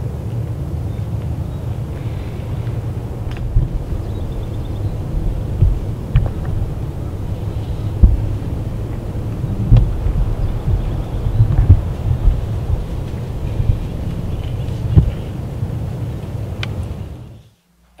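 Steady low outdoor rumble on the camera microphone, with uneven louder surges and a few faint clicks; it fades out shortly before the end.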